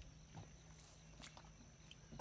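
Near silence, with a few faint ticks and shuffles from feral hogs moving about inside a wire-panel trap.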